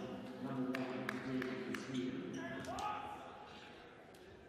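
A basketball bounced on a hardwood court, a handful of short knocks a few tenths of a second apart, under faint voices in the arena.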